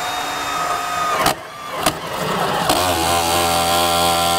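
Milwaukee M18 Fuel Super Hawg cordless hole drill running in low speed, boring into kiln-dried lumber, with two sharp cracks in the first two seconds. From about three seconds in, the tone drops to a lower, steady buzz as the bit binds up and the drill's built-in clutch slips.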